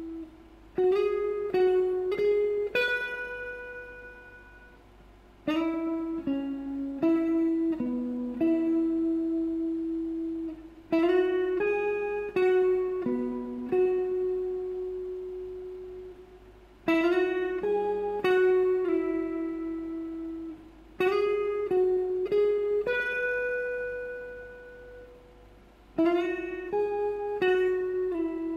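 Clean-toned Strat-style electric guitar with Fender American Standard pickups, played through an acoustic amp: single-note melodic phrases, each a few quickly picked notes ending on a held note that rings out and fades. The phrase repeats about five times, starting again every five seconds or so.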